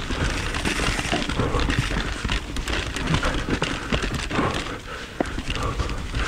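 Onboard sound of a mountain bike being pedalled up a choppy, rough climb, heard from a helmet or chin camera: tyres crunching over gravel and rock, with a dense run of small clicks and rattles from the bike and a steady low rumble.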